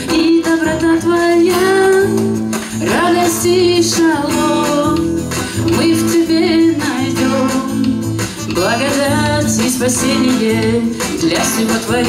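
A woman singing a song in sustained phrases, accompanied by her own strummed acoustic guitar, amplified through a microphone.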